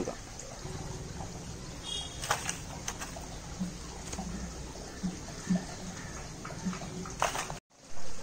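Soft, crumbly rustling with a few light taps as moist cocopeat is tipped and spread into a plastic seedling tray, over a steady low hum.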